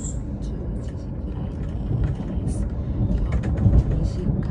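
Steady low rumble of a passenger train running, heard from inside the carriage, with scattered light clicks and knocks over it and a slight swell in level near the end.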